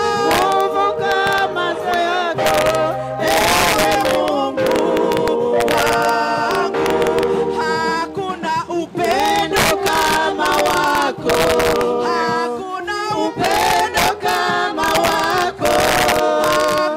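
Mixed choir of men's and women's voices singing a song together, with held notes and several voices sounding at once.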